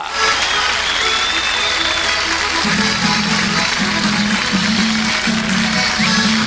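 Crowd applause, then about two and a half seconds in an accordion and guitar strike up a rhythmic cueca tune with a steady, repeating pulse of chords.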